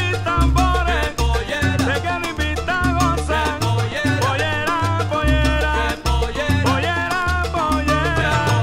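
Salsa band playing an instrumental passage of a cumbia: held bass notes and a steady beat of Latin percussion under a lead melody line, with no singing.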